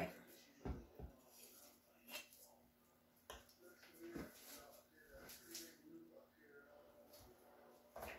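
Near silence, with a few faint taps and knocks scattered through it as a paint-covered tile on its board is handled and turned into a new position.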